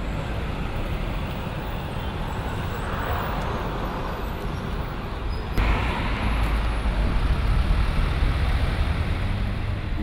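Street traffic noise: a steady hum of road vehicles. About halfway through it changes abruptly to a louder, deeper rumble.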